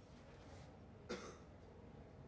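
Near silence of room tone, broken once about a second in by a single short cough.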